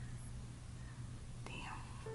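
A faint whispered voice over a low steady hum, with a small click about one and a half seconds in.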